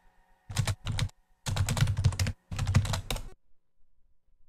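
Typing on a computer keyboard in several quick flurries of keystrokes, the last two longest, stopping a little over three seconds in.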